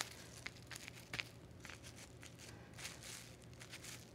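Plastic wrap being scrunched and pressed by hand onto wet watercolour paint, giving faint, scattered crinkles and crackles.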